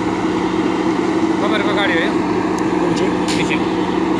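JCB backhoe loader's diesel engine running steadily at a constant pitch as the machine works.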